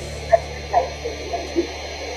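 Steady low electrical hum on the call audio, with a few brief, short vocal sounds in a pause between speakers.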